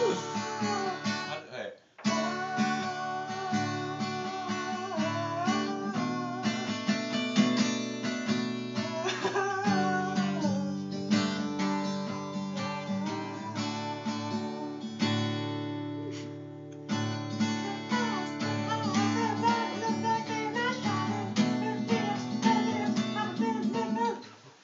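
Acoustic guitar strummed with a man's voice singing along, a song played as a serenade. The playing breaks off briefly about two seconds in and dips quieter for a moment near the middle.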